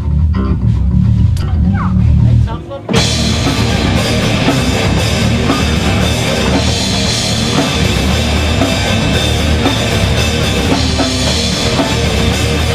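Live rock band opening a song: a low, bass-heavy riff for about three seconds, a brief drop, then the full band with drum kit and electric guitars comes in together and plays on steadily.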